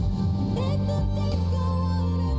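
Female K-pop ballad vocal, held notes wavering in vibrato, over a slow, sustained instrumental backing.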